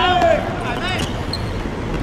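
Men shouting on a hard outdoor court, one falling shout at the start. About a second in comes a sharp knock of the football being struck.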